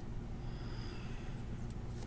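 Steady low background hum, with a few faint clicks near the end from trading cards being handled in the hands.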